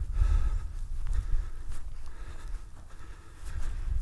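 Wind buffeting the microphone as an uneven low rumble, with a hiker's footsteps on a soft grassy moorland track.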